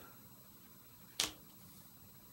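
Quiet room with one short, sharp click a little over a second in, from handling playing cards on a tabletop.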